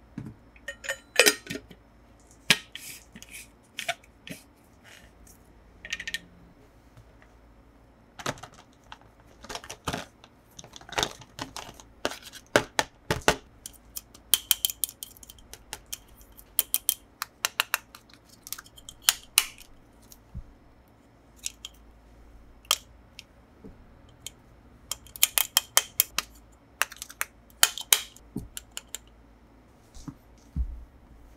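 Close-up handling sounds of hard toys: an irregular run of sharp clicks, taps and light clatters as a metal-lidded drinking tumbler and then a plastic toy watch are picked up, turned and worked by hand, with a quieter spell about three-quarters of the way through.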